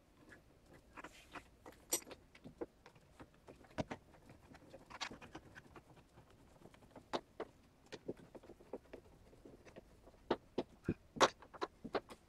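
Quiet, scattered small metal clicks and short scrapes as a knob lock's inside rose and retaining screws are fitted by hand.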